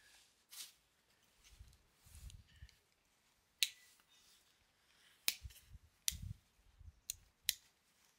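Victorinox Huntsman Swiss Army knife being handled as its tools are opened: a few sharp metallic clicks, about five of them spread through the second half, with soft low handling knocks in between.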